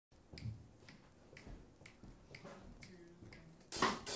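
Finger snaps keeping a slow, even beat, about two a second, quiet and crisp. Near the end the band's music comes in much louder with drums.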